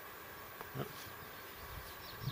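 Faint, steady buzzing like a flying insect, with a short low rustle of cord being wrapped in the hands near the end.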